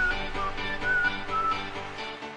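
Intro music under the title card: a high melody of short single notes over a steady rhythmic backing.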